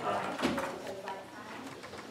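Indistinct, untranscribed talking in a room, with voices rising and falling in short phrases.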